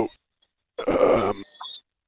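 A short wordless vocal noise from a man on the phone line, lasting well under a second about a second in, followed by a faint brief tone.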